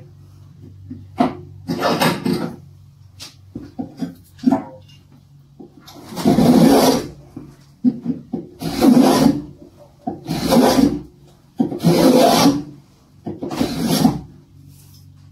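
Spokeshave cutting along the corner of an oak board held in a bench vise: five long scraping strokes about a second and a half apart in the second half, each one peeling off a thin shaving. Before them come a few shorter scrapes and knocks as the board is set in the vise.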